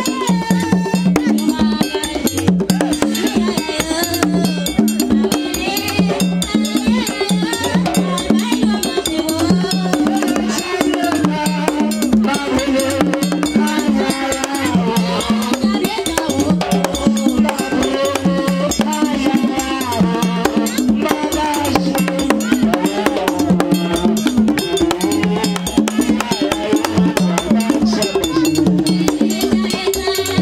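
Haitian Vodou ceremonial music: drums keep a steady, repeating beat while voices sing a chant over it.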